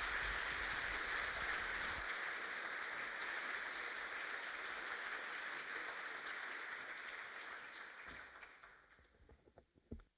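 Audience applauding, a steady clapping that fades away about eight or nine seconds in, with a few sharp knocks near the end.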